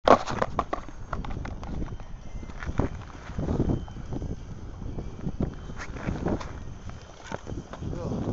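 Wind rumbling on the microphone, with many irregular knocks and clicks, the loudest at the very start as the camera is handled and set down.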